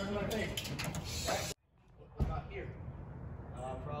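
Mostly indistinct talking. The sound cuts out abruptly for about half a second in the middle, then comes back with a single sharp knock.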